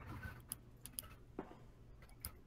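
A few faint, scattered computer keyboard clicks, about five in two seconds, over a low steady electrical hum.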